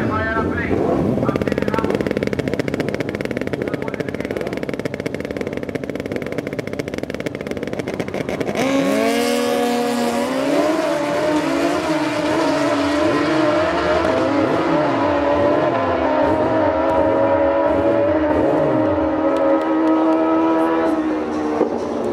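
Two drag-racing motorcycles run on the start line, then launch together about nine seconds in with a sudden loud rise in engine sound. Their engines then run at high revs as the bikes accelerate away down the strip.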